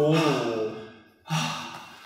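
A man's sentence trailing off, then about a second in a man's sigh: a short breath with a little voice in it that fades away.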